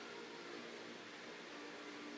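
Steady faint hiss with a faint low hum: room tone between spoken sentences.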